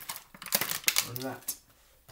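Plastic packaging of a tray of mince crinkling and clicking as it is handled on a chopping board: a quick run of sharp clicks that dies away about halfway through.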